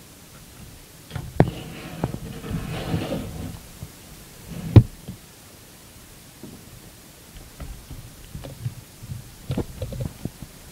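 Handling noise as a small screwdriver works a screw out of a plastic laptop screen bezel: scraping and rustling with light clicks in the first few seconds, one sharp knock about five seconds in, then a scatter of small clicks near the end.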